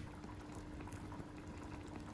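Hot-pot broth bubbling faintly in a small stainless steel pot under a glass lid on a portable gas stove, with small scattered pops.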